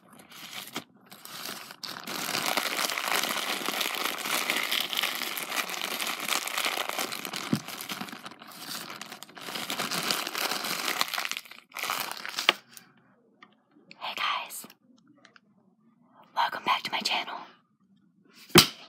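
Clear plastic zip-top bag crinkled and crumpled in the hands close to the microphone, as an impromptu ASMR sound: a dense, continuous crinkling for about ten seconds, then two shorter bursts near the end.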